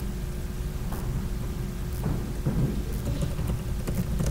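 Steady low rumble of room noise with a thin steady hum and a few faint clicks.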